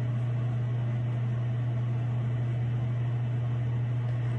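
A steady low hum with an even hiss behind it.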